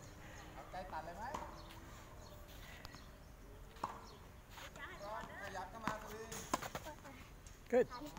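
A few sharp knocks of a tennis ball bouncing on a hard court and being struck by a racket, over faint distant voices.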